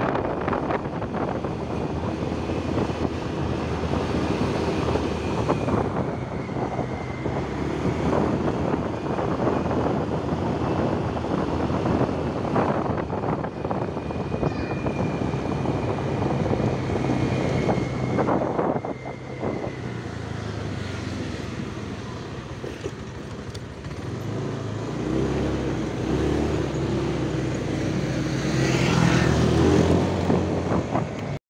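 Motorcycle engine running while riding along a road, with wind noise on the microphone. In the last few seconds the engine speeds up and gets louder.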